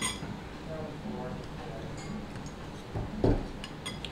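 Cutlery clinking against a plate, one sharp ringing clink at the start, then a dull knock a little after three seconds and a few light clicks, over faint conversation in the background.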